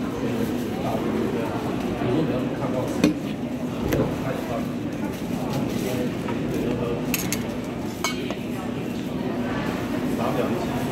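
Stainless steel bowls and chopsticks clinking a few times, sharp separate clinks over a steady murmur of voices in a canteen dining hall.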